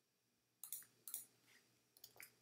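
Near silence broken by two faint, sharp clicks about half a second apart in the middle, with a fainter third soon after: the clicks of working a computer's mouse and keys while editing.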